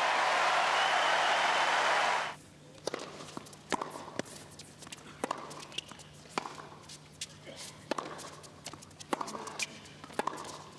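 A crowd applauds for about two seconds, then cuts off suddenly. After that come sharp, separate knocks: a tennis ball struck by rackets and bouncing on the court in a rally, with quiet arena ambience between the hits.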